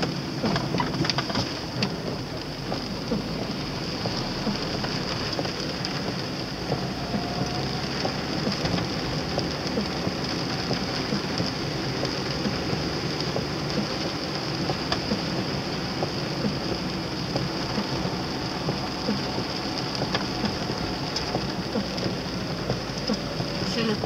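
Heavy rain falling on a car, heard from inside the moving car: a steady hiss of water with many small drop ticks, over the low rumble of the engine and tyres on the wet road.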